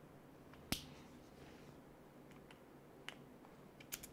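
One sharp click a little under a second in, then a few faint clicks near the end: small ball bearings being pressed by hand onto the plastic differential parts of an RC crawler axle.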